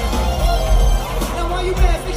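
A live pop band with a male lead singer, heard from the crowd in an arena: a sung melody over heavy bass and electric guitars.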